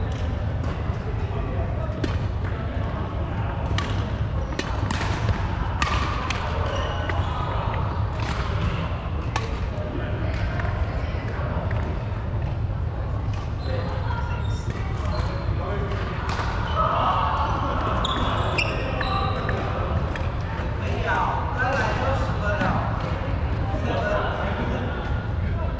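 Badminton play in a large, echoing hall: sharp racket strikes on the shuttlecock, densest in the first half, with voices and shoe noise on the wooden floor over a steady low hum.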